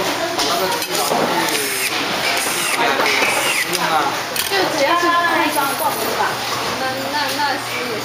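People talking, with a few light clicks and knocks in between.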